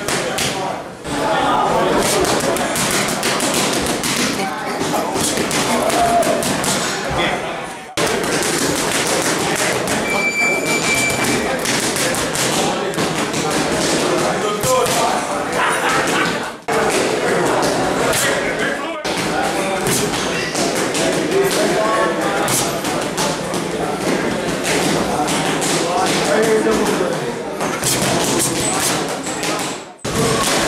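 Boxing gloves striking focus mitts in fast, rapid-fire combinations, many sharp smacks and thuds, with voices in the gym behind them.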